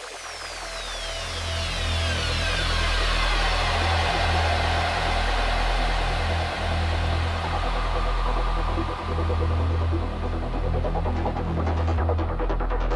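Psytrance track intro fading in over the first couple of seconds: a deep, steady bass drone under high synth sweeps that fall in pitch.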